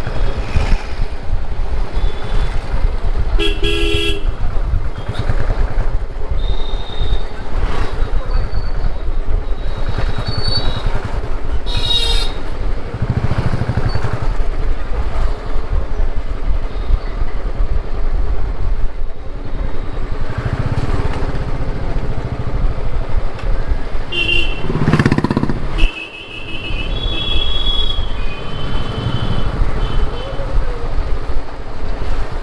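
Motorcycle engine running steadily while riding through street traffic, with several short horn toots from surrounding vehicles a few seconds in, around the middle and near the end.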